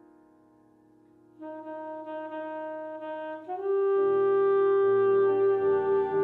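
Alto saxophone playing a slow, bluesy jazz melody with piano. A piano chord dies away almost to silence, then the sax enters softly with a long held note about a second and a half in and swells much louder just before four seconds, over low piano chords.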